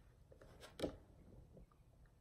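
Quiet room tone with a brief papery scrape of a tarot card being handled, a little under a second in.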